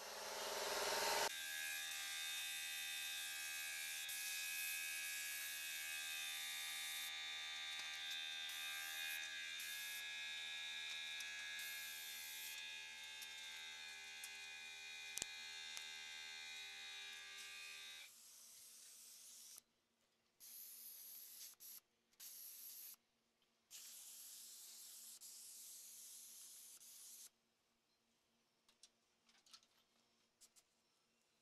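Air spray gun spraying catalysed high-build primer: a steady hiss with an even hum under it. About 18 seconds in it gives way to shorter bursts with breaks between.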